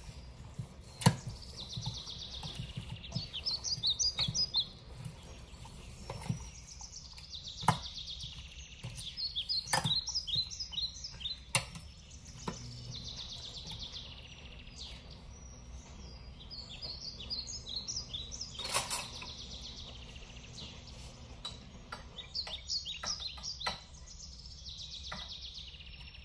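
A metal spoon stirring a thick yogurt raita in a stainless steel bowl, with a few sharp clinks as it knocks against the bowl. Bouts of quick, high chirping recur every few seconds.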